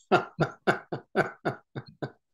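A man laughing heartily: a run of about seven rhythmic 'ha' bursts, three or four a second, fading near the end.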